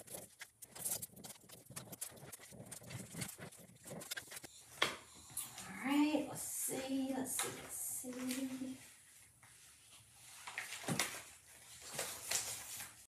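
Handling noises of rub-on transfer work: rustling of the transfer sheet and small taps and clicks on the work table, with a sharper knock near the end. About six to nine seconds in, a woman hums a few short notes.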